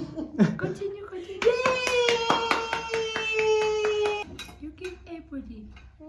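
Quick, even hand clapping, about four or five claps a second, under a long, high, held voiced cheer that lasts nearly three seconds and sinks slightly in pitch, with children's chatter before and after.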